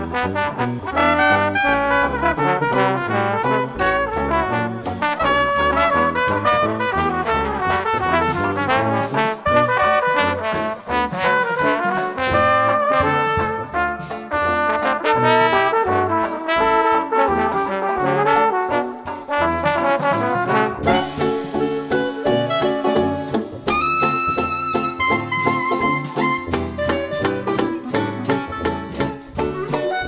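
Instrumental jazz music led by a trumpet playing a melody over moving bass notes and a steady beat, with a few long held notes about three-quarters of the way through.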